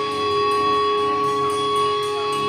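Live rock band playing loud, with long held notes ringing steadily over the guitars and drums.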